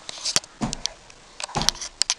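A handful of sharp clicks and light knocks from a wooden door being opened: the latch and handle, with a couple of soft thuds. The loudest click comes about a third of a second in, and another cluster follows around halfway through.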